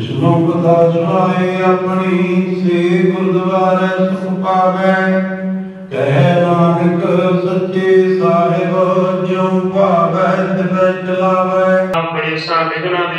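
Gurbani kirtan: Sikh devotional hymns sung in long melodic phrases over a steady low drone accompaniment, with a brief break about six seconds in before the next phrase.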